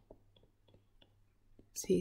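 A few faint, short ticks of a stylus tapping on a screen while handwriting, spaced roughly a third of a second apart. A voice starts speaking near the end.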